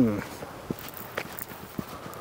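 Footsteps of a person walking on a forest path: a few soft steps about half a second apart over a faint steady background.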